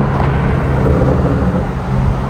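BMW M3 driving at a steady pace: a low, even engine note under loud rushing road and wind noise.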